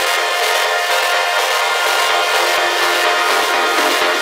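Melodic techno / progressive house music in a breakdown: sustained synth chords with no kick drum or bass. The low end starts to creep back in past the middle.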